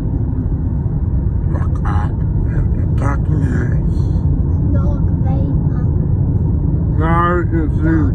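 Steady low road and engine rumble inside a moving car's cabin, with faint scattered voices and one higher, rising voice sound about seven seconds in.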